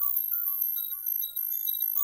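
Propellerhead Reason's Thor synthesizer playing an FM bell patch driven by a Matrix pattern sequencer: a quick run of short, high-pitched bell notes, about four a second, stepping between a few pitches, with chorus and delay on.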